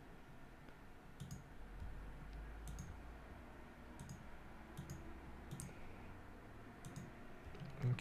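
Faint clicks of a computer mouse button, one every second or so, over a low background hum.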